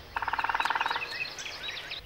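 A frog calling: one rapid pulsed trill lasting under a second. Small birds chirp with short gliding notes through and after it.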